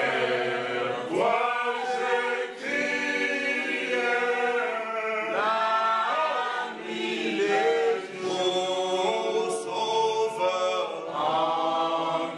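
Unaccompanied voices singing a slow hymn, with long held notes and no instruments.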